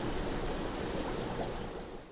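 Steady rushing of running water from aquarium filtration, easing off near the end.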